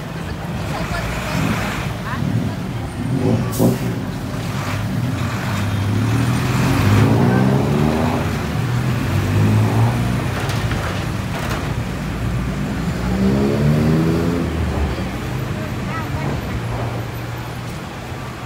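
Diesel engine of a dump truck running close by as it manoeuvres, rising in pitch twice as it is revved, over steady street traffic.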